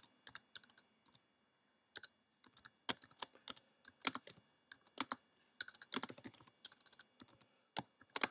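Typing on a computer keyboard: irregular runs of key clicks with brief pauses between them.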